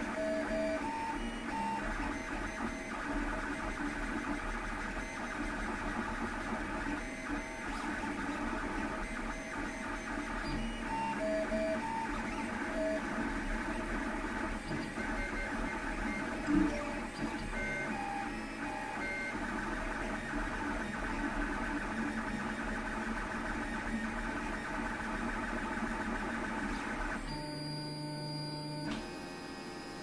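LulzBot TAZ 6 3D printer running a print, its stepper motors whining in several steady tones with short pitch blips as the print head changes moves, and one sharp click about halfway through. Near the end the sound changes.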